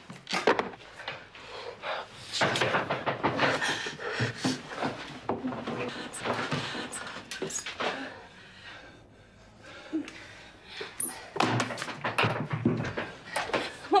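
Irregular knocks, thuds and clatter in a room, busiest a couple of seconds in and again near the end, with a lull in the middle.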